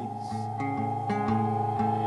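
Live band music between sung lines: plucked guitar notes over a held tone, with regular strokes, growing a little louder toward the end.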